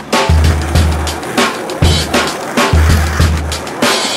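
A skateboard rolling on asphalt under a loud music track with heavy bass notes and a steady drum beat.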